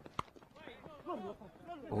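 Cricket bat striking the ball: a single sharp knock about a fifth of a second in, picked up by the stump microphone as the batter opens the face of the bat. Faint voices follow.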